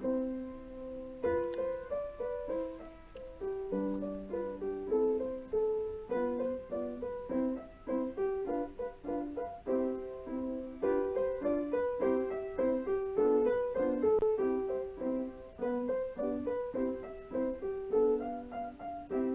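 Solo piano music: a steady, moderate-tempo run of notes and chords.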